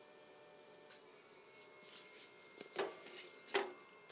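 Quiet room tone, then a few brief rustles and knocks close to the microphone, mostly between the third and fourth seconds: hands handling a small plastic bag and the welder's housing.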